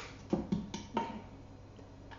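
A wooden spoon knocking three times against the metal inner pot of an Instant Pot during the first second, light sharp taps, followed by faint background.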